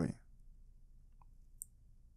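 Quiet room tone after the end of a spoken word, broken by a faint tick about a second in and a short, sharp click about a second and a half in.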